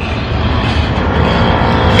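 Steady, loud low rumble of outdoor noise, like wind on the microphone, with no voice over it.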